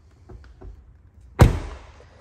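The driver's door of a Range Rover L405 is shut once, about one and a half seconds in: a single loud slam that dies away over half a second.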